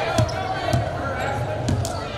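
Basketball bouncing on a hardwood gym floor, a handful of sharp bounces in two seconds, over voices of players and crowd in the gym.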